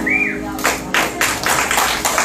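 The last chord of an acoustic guitar ringing out as a song ends, with a short whistle near the start. About two-thirds of a second in, a small audience starts clapping.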